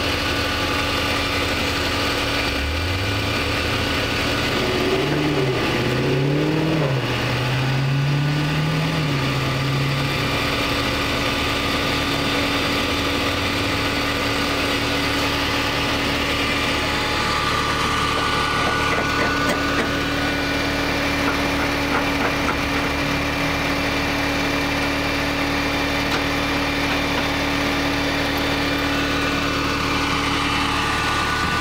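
Vehicle engine idling steadily. A second engine note climbs about three seconds in and wavers up and down until about ten seconds in, like an engine revving.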